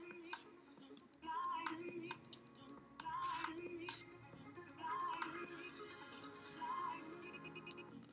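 Quiet background music: a short wavering melodic phrase that recurs about every second and a half or so, with scattered clicks of computer mouse and keyboard use throughout.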